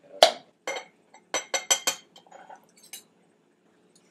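Metal spoons clinking against a glass jar as sauce is scooped out: a quick run of bright, ringing clinks about a second in, then a few fainter taps.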